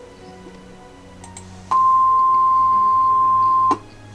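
Computer-generated tone at C6 (about 1,047 Hz), the highest note an average female voice reaches. It is a single plain tone without overtones, starting a little under two seconds in, held steady for about two seconds and cut off abruptly.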